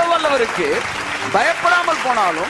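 A man's voice preaching, his pitch swinging up and down in long phrases, over a steady hiss of background noise.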